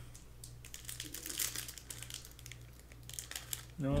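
Foil wrapper of a 2023 Donruss Optic basketball retail card pack crinkling as it is handled, a quick run of small crackles.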